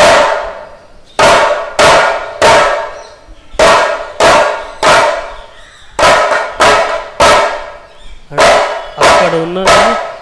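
Two-headed barrel drum struck in a slow, repeating pattern of three strokes about two-thirds of a second apart, then a short pause. Each stroke is sharp and rings briefly with a clear pitch.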